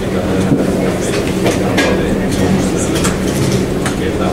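Steady room hum with indistinct voices in the background and a few scattered clicks and knocks.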